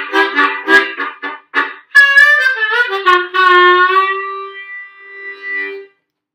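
Harmonica played uncupped into a Silverfish Dynamic Medium Z harmonica mic. First comes a run of short, choppy chords; then, about two seconds in, a bent note slides down into one long low note that dips, swells again and cuts off near the end.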